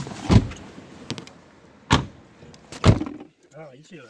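Car doors being shut: three heavy thumps, one just after the start and the others about two and three seconds in, with small clicks between them.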